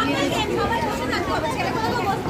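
Indistinct chatter of people talking, with no single clear voice standing out.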